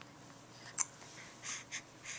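Faint close-up breaths, two or three soft puffs in the second half, and one sharp little mouth click a little under a second in.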